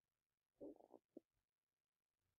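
Near silence, broken by one faint, brief low sound a little over half a second in and a tiny blip just after.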